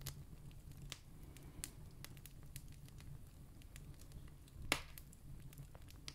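Quiet pause with a faint low hum of recording noise, a few tiny scattered clicks, and one sharper short click about three-quarters of the way through.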